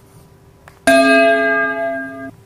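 Subscribe-button sound effect: a faint click, then a bell chime that strikes just under a second in and rings steadily as one clear tone with overtones.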